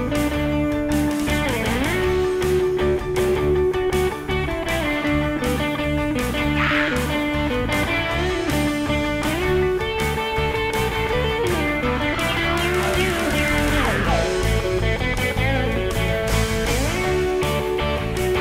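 Rock band playing an instrumental break. An electric guitar carries the lead with long held notes that bend up and down in pitch, over drums and a full band backing.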